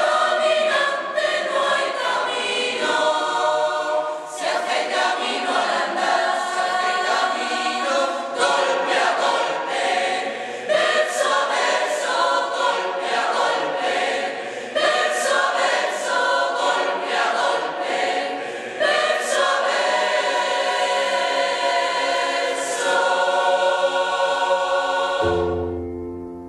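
Choir singing together, the song cutting off suddenly just before the end.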